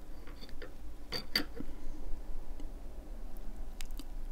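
A few small, sharp metallic clicks and ticks from a stainless steel rebuildable tank atomiser (HAAR RTA) being turned between the fingers as its juice-flow control is set, with two clicks close together just over a second in.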